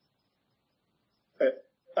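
Near silence, then a man's short hesitant 'uh' about one and a half seconds in, with his speech resuming at the very end.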